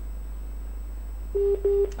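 Telephone ringing tone on a phone line: two short beeps at the same pitch in quick succession, about a second and a half in, over a steady low hum.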